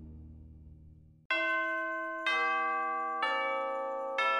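The tail of soundtrack music dies away. About a second and a quarter in, bell strikes begin: three strikes about a second apart, each pitched lower than the last and each left ringing.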